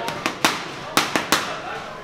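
Boxing gloves smacking a trainer's handheld punch paddles: two quick three-punch combinations of sharp slaps, about half a second apart.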